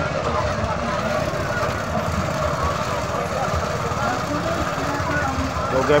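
Fairground noise at a spinning kiddie airplane swing ride: a steady low machine rumble under a crowd of voices chattering. A voice says "okay" at the very end.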